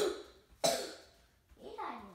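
A person coughing twice in quick succession, two sharp coughs about two-thirds of a second apart, followed by a short spoken "yeah" near the end.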